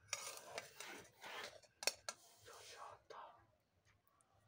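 Flat metal spatula faintly scraping and stirring against a steel pot as fish curry is served, with one sharp metal clink about two seconds in.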